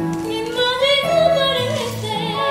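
A woman singing a song with instrumental accompaniment; her voice rises to a held, wavering note in the middle.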